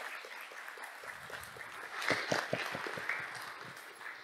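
Audience applauding: a room full of hands clapping, swelling about halfway through and dying down near the end.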